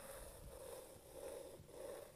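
Faint, uneven scraping of a needle tool cutting a circular line through a leather-hard clay slab as the banding wheel turns, coming in a few soft strokes.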